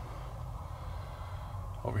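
A quiet, steady low hum in a pause between words, with a short intake of breath just before a man's voice resumes near the end.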